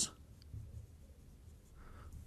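Faint strokes of a dry-erase marker writing on a whiteboard.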